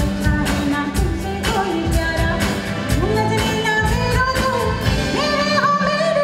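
A live band playing a Hindi film song with a lead singer, over a steady beat of drum hits about twice a second.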